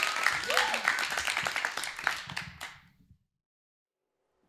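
Audience clapping and cheering, with a few rising-and-falling whoops. The applause fades and cuts to silence about three seconds in.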